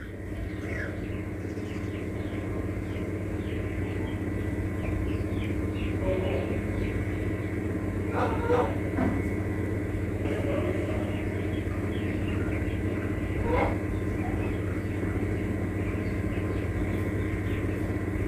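A low, steady rumbling sound effect that swells over the first few seconds and then holds, with a few faint crackles, laid under a blast-and-lightning scene.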